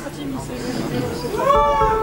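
Voices calling out in a concert hall between songs, including high, wavering whoops, with one rising call about one and a half seconds in that settles into a held note.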